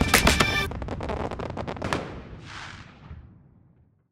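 Fireworks crackling over music. The music stops under a second in, leaving a fast run of crackles and a brief hiss about two and a half seconds in, all fading out to silence.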